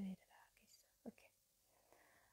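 Near silence: a spoken word trails off at the start, followed by faint breathy sounds and one small click about a second in.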